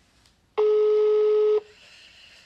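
Telephone ringback tone on an outgoing call, heard through a phone's loudspeaker: one steady beep of about a second, starting about half a second in and cutting off sharply. It means the number is ringing at the other end and has not been picked up.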